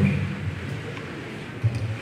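A pause in a man's talk through a microphone: his voice trails off at the start, leaving low room tone in a large hall, and a short low vocal sound comes near the end as he starts speaking again.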